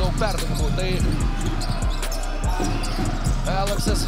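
Basketball being dribbled on a hardwood court: repeated low bounces, roughly one every half-second to second.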